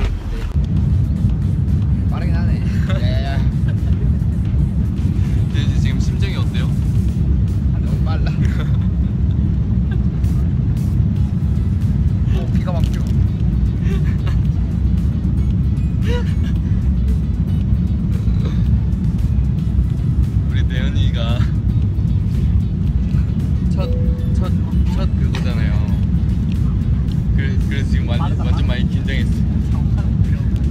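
Steady, loud low rumble of an airliner's engines heard from inside the cabin, typical of the takeoff roll.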